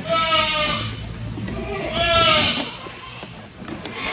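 Goats bleating: two long, wavering bleats, one right at the start and another about two seconds in.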